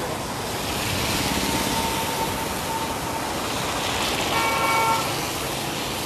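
Road traffic passing on a wet road, a steady wash of tyre and engine noise, with a short vehicle horn toot about four and a half seconds in.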